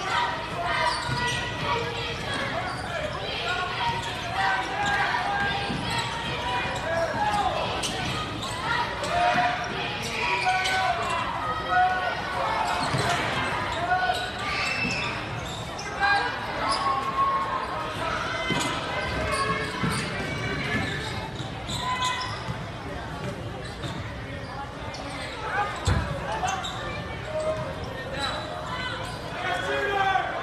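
A basketball bouncing on a hardwood court during play, with crowd and player voices throughout and scattered sharp knocks.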